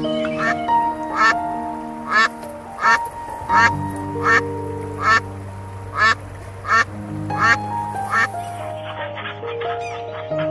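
A duck quacking repeatedly, about one quack every three-quarters of a second, around a dozen in all, stopping about eight seconds in. Background music with long held notes plays under it.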